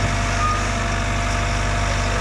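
Bobcat T66 compact track loader's diesel engine running steadily as the machine backs down the trailer ramps, with one short high beep about half a second in.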